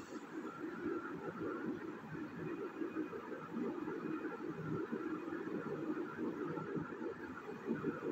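Faint steady background noise of the room, a low hum and hiss with no sharp sounds.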